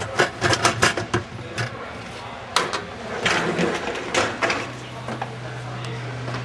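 Clicks and knocks of a dishwasher's central filter being handled in the sump, a quick cluster in the first second and a few scattered ones after; a low steady hum comes in for the last part.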